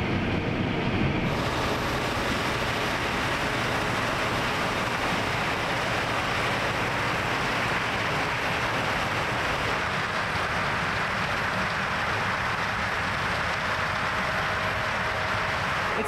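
Steady running noise of corn-harvest machinery, a tractor with its grain cart and a combine, heard as an even rumble and hiss with no distinct engine note; the sound changes character about a second in.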